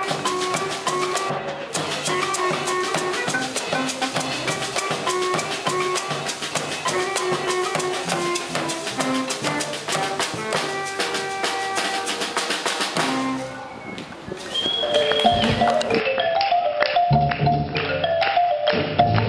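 Live Colombian Pacific-coast music played by a youth ensemble: a bass drum (bombo) beaten with sticks, with cymbals and other percussion under pitched instruments. It breaks off briefly about three-quarters of the way through and gives way to a marimba playing repeated notes over percussion.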